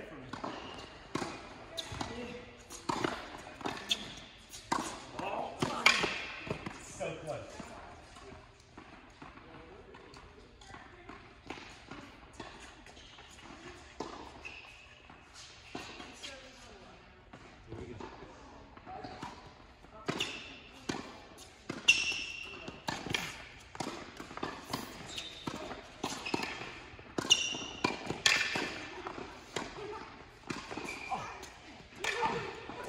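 Tennis balls being struck by rackets and bouncing on an indoor hard court in a large hall, a string of short sharp pops, with voices in the background.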